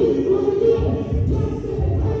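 Workout music with sung vocals over a steady, pulsing bass beat.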